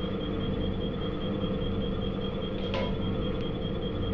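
Hydraulic compression testing machine running steadily as it loads a brick, with a constant hum and a thin high whine from its pump motor. A faint brief click comes near three seconds in.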